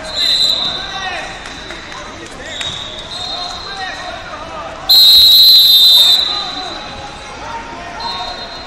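Referee whistles in a busy wrestling hall. A loud, shrill blast lasting just over a second comes about five seconds in and stops the match. Fainter whistles from other mats sound before it, over the chatter of a crowd.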